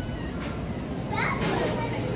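A small child's high voice babbling and calling out, starting about a second in, over the low hum of a busy shop.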